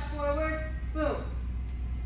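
A woman singing: a held note in the first second, then a downward slide in pitch about a second in, over a steady low hum.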